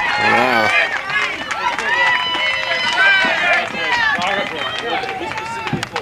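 Several people shouting and calling out at once at a baseball game, their voices overlapping so that no words stand out, with a few sharp clicks among them.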